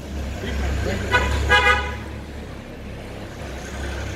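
A vehicle horn honking twice in quick succession, about a second in, two short steady-pitched blasts over a low rumble.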